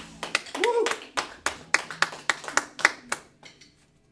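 Scattered clapping from a few people, separate claps that die away about three and a half seconds in, with a short voice call near the start.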